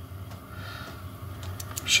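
Quiet room tone, with a few faint clicks near the end and a short in-breath just before speech starts again.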